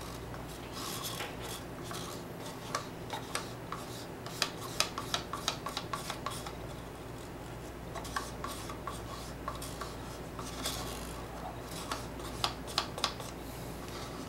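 Wooden stir stick scraping epoxy resin out of a plastic mixing cup: quick, irregular scrapes and clicks against the cup wall, thickest about four to six seconds in and again near the end.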